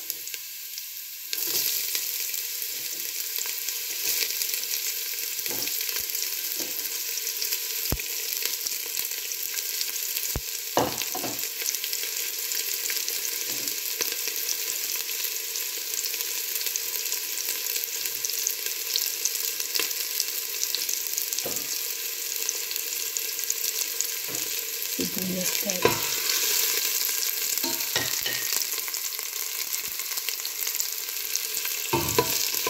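Garlic, ginger and chopped onion sizzling in hot oil in a stainless steel pot. The sizzle jumps louder about a second in, as the onion goes into the oil, with a few sharp clicks and knocks along the way.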